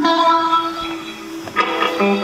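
Electric guitar music: a held chord rings and slowly fades, and a new chord is struck about one and a half seconds in.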